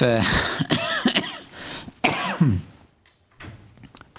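A man clearing his throat and coughing, in a few loud bursts over the first two and a half seconds.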